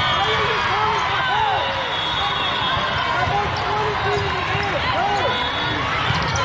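Many short squeaks from athletic shoes on indoor sport-court floors, each rising and falling in pitch, over a steady din of crowd voices in a large hall.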